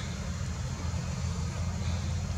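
Steady low background rumble with a faint hiss, with no distinct sounds in it.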